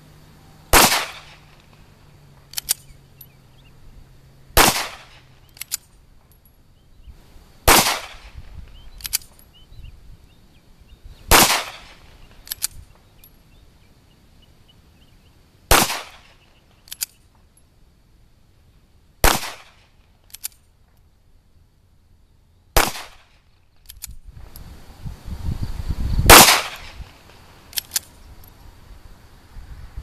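Eight single pistol shots from a 1911 chambered in 7.62x25, fired slowly a few seconds apart, with small clicks between shots; the last shot is the loudest. With a lighter 12-pound recoil spring the slide runs its full stroke and cocks the hammer each round, but the load is still too weak to eject the case.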